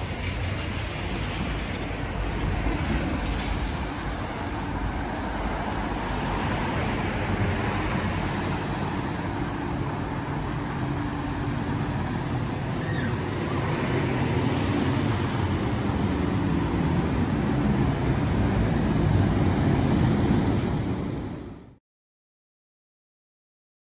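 Steady road traffic noise heard from a pavement, swelling slightly near the end before cutting off abruptly.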